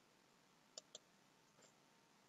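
Two quick, faint computer mouse button clicks about a second in, then a softer tick, against near silence.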